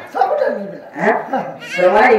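A man's voice speaking in drawn-out sounds with sweeping pitch, falling in the first second and rising near the end.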